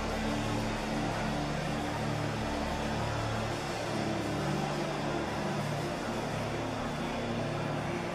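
Soft worship music under the pause: sustained keyboard pad chords, the low notes held and shifting slowly.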